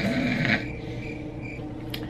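Quiet background music with held tones, and a short rustle about half a second in.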